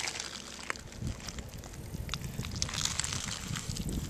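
Wind buffeting the microphone as an uneven low rumble starting about a second in, with light crackling and scattered clicks over it.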